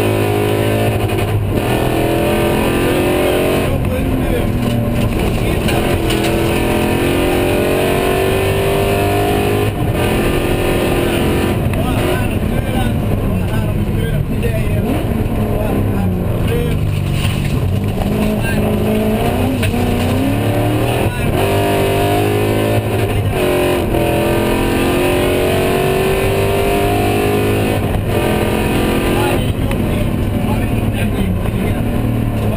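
A BMW E36 rally car's V8 engine, heard from inside the cockpit and driven hard along a special stage. The engine repeatedly revs up in pitch, drops back at each gear change, and falls away where the car slows for bends.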